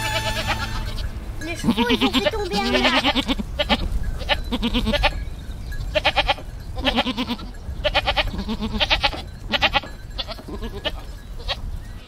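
A herd of goats bleating, many separate wavering, quavering calls one after another.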